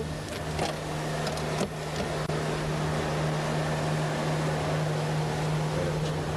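Engine of an Era AC Cobra replica running at a steady note under way, with a steady rush of road and wind noise and a few brief clicks in the first two seconds.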